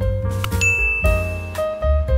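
About half a second in, a click and then a single high bell ding that rings for about a second: the sound effect of a subscribe-button and notification-bell animation. Under it, background piano music.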